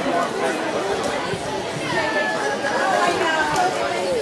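Crowd chatter: many overlapping voices, children's among them, talking at once with no one voice standing out.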